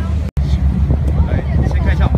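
Tour boat's engine running with a steady low drone, under faint voices on the deck. The sound cuts out for an instant about a third of a second in.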